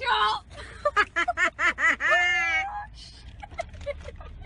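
A woman laughing: a quick run of about six high-pitched 'ha' pulses about a second in, ending on a drawn-out note.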